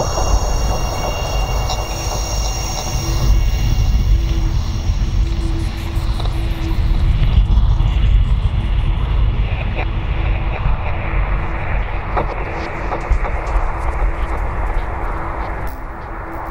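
Dark ambient fantasy music: a deep, steady rumbling drone under a noisy, wind-like wash and one held tone, with high shimmering tones fading out over the first few seconds.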